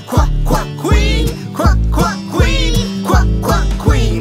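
Upbeat children's song with a bouncy beat of about two strokes a second and a bass line, and a voice chanting 'Q, Q, queen' over it.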